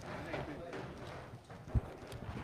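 Low murmur of voices in a hall, with a single dull thump near the end.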